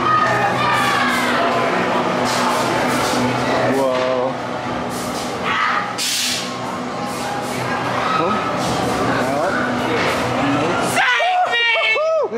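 Loud haunted-house soundtrack: a steady low drone under dense effects, with short hissing bursts and voices shouting. The whole bed drops away suddenly near the end.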